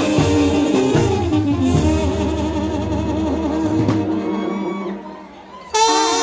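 Live band music with bass and drums, between sung lines. About five seconds in it drops away briefly. Just before the end it comes back in loudly with a sustained, wavering melody.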